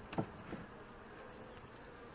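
Honey bees humming faintly around an opened hive, with two light knocks near the start as a wooden frame is pried loose and lifted out.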